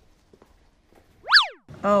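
A short cartoon-style sound effect: a whistle-like tone that swoops sharply up in pitch and straight back down, over in about a third of a second.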